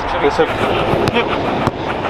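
A football being kicked in quick passes on artificial turf: two sharp strikes, about a second in and again under a second later.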